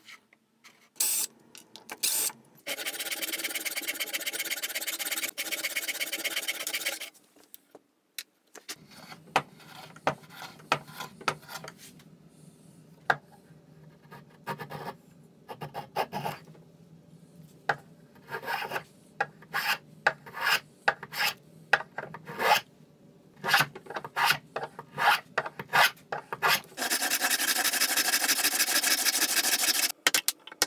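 A small power driver runs steadily for about four seconds, putting screws into a clamped wooden glue-up. Then comes a long run of short, irregular scrapes and knocks of wood being worked by hand. Near the end a steady rasping sound on wood starts.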